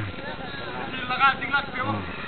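Children's voices calling out across an open field over a steady background hiss, with a high-pitched call about a second in.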